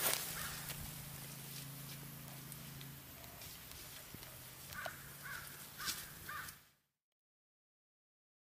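Faint forest ambience with a low steady hum during the first few seconds, then a bird calling four times in quick succession near the end, after which the sound cuts off.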